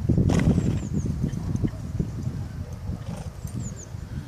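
A horse rolling and lying in arena sand: low, irregular scuffing and rubbing of its body on the ground, loudest in the first second and then fading. Faint bird chirps sound twice.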